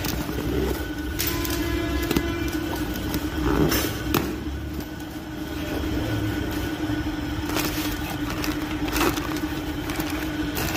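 A cardboard box being opened by hand, its flaps, crumpled packing paper and plastic bag rustling and crackling several times in short, sharp strokes. Under it runs a steady low hum and rumble.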